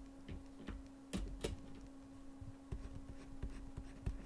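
Light, scattered clicks and taps from working a computer's pen or mouse, with two sharper clicks about a second in, over a steady low hum.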